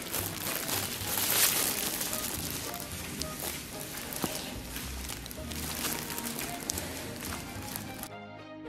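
Background music over close-up eating sounds: a man sucking and chewing meat off a stewed spicy beef trotter, loudest about a second and a half in.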